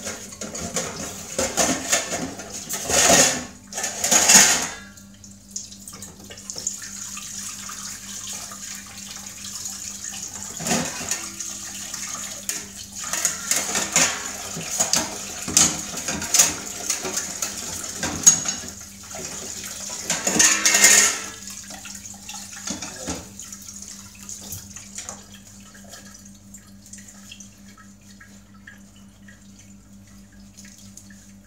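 Kitchen tap running into a stainless steel sink while dishes are washed and rinsed, with clinks and clatters of metal pots, lids and utensils and a few louder bursts of water. It goes quieter in the last several seconds.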